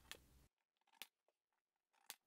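Spring-loaded center punch firing into plywood: two sharp clicks about a second apart, with near silence between.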